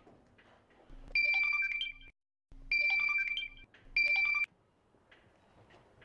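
Mobile phone ringtone: a short electronic melody rings three times, starting about a second in, with the third ring cut off after half a second.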